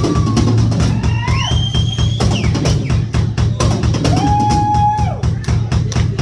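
Live rock band playing: a drum kit keeping a steady beat with bass drum and snare, electric bass underneath, and long sustained lead notes that slide up in pitch and hold.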